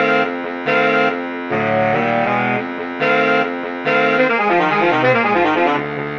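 Saxophone quartet of two alto saxes, tenor sax and baritone sax playing a run of short held chords. In the second half the voices move in quick stepwise lines against each other.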